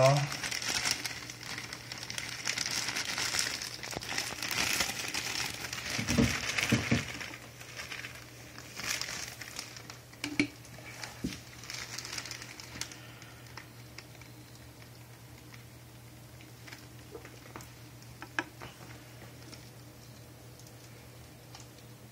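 Crinkling and rustling handling noise over the first several seconds, with a couple of dull bumps about six to seven seconds in. After that only scattered faint clicks and taps over a low steady hum.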